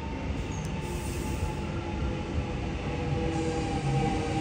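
A Melbourne Metro X'Trapolis 100 electric suburban train pulling into the platform. It gives a steady whine made of several held tones over a low rumble, growing slightly louder as it comes alongside.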